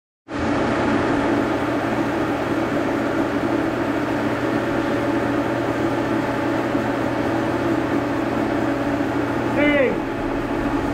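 Brown & Sharpe milling machine's vertical-head spindle running steadily at about 350 RPM, a constant hum with a whine, as its freshly adjusted, grease-lubricated Timken spindle bearings are run in.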